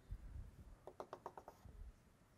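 Chalk tapping on a blackboard in a quick run of about seven short ticks near the middle, marking out a dotted line, with faint low shuffling around it.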